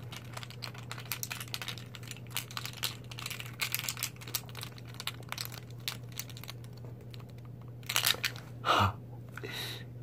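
Small clear containers handled in the fingers close to the microphone: a rapid run of little clicks and crinkles, louder about eight seconds in, over a steady low hum.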